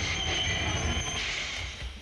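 Train passing with its wheels squealing: a steady rumble with high squealing tones that stop about a second in, then the noise fades away near the end.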